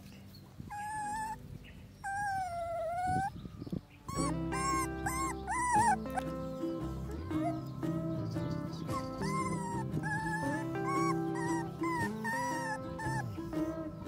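A puppy whimpering in high, wavering whines: two longer ones at first, then a quick run of short, rising-and-falling cries from about four seconds in, over background music with held notes.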